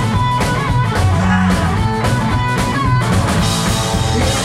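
A rock band playing live and loud: electric guitar over a pounding drum kit, with no break in the sound.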